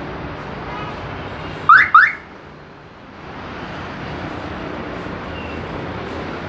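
Two quick rising electronic chirps of a car alarm, back to back about a second and a half in, loud over a steady background noise.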